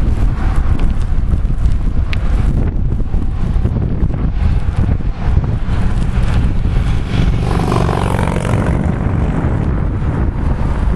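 Wind rumbling on the microphone of a moving bicycle, steady and loud throughout. A car's engine and tyres can be heard passing near the end.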